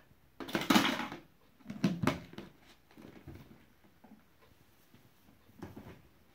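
A bubble toy dropped into a plastic bucket and the bucket's lid knocked into place: a clatter about half a second in and sharp knocks around two seconds. After that come faint rustling and shuffling sounds as the bucket is moved.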